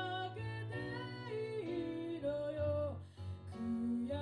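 A woman singing a song while accompanying herself on a Roland FP-4 digital piano: held piano chords under her sung melody.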